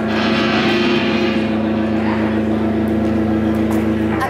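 Electric guitar and bass amplifiers holding a steady, sustained low drone, a held chord ringing through the PA. There is a hissy wash over it in the first couple of seconds, and the drone cuts off just after the end.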